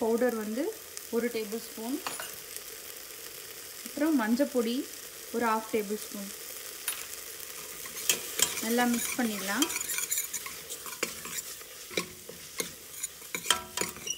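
Metal spoon stirring masala in a stainless steel pressure cooker over a light sizzle. The spoon scrapes the pot in strokes that dip and rise in pitch, and it clicks and knocks against the metal more busily in the second half.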